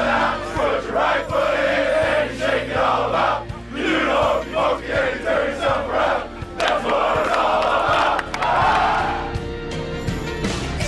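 A packed group of football players shouting and cheering together in celebration, in a crowded locker room, with rock music playing underneath.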